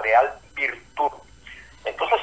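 Speech only: a voice talking in short phrases, falling to a pause in the second half before talk resumes near the end, with the thin, narrow sound of a radio or phone line.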